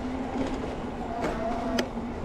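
Electric bike rolling and slowing on pavement: tyre rumble and wind noise under a steady low hum, with a brief higher squeal in the second half and a sharp click near the end.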